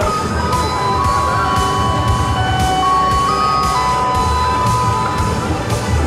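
Music with a steady beat, about two a second, under a melody of long held notes.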